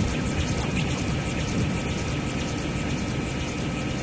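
Ambient electronic synth music: a dense, steady wash of noise with a few faint held tones running through it.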